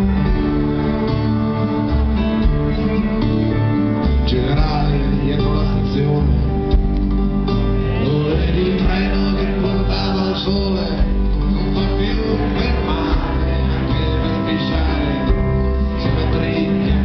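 Live acoustic band playing an instrumental passage, with strummed acoustic guitars, drums and a violin. A wavering violin melody grows stronger about four seconds in.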